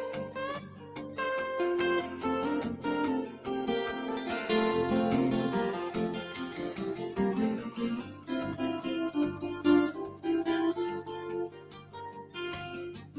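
Two acoustic guitars playing an instrumental passage of quick picked notes.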